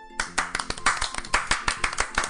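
Hands clapping quickly and unevenly, starting a moment in, over faint background music.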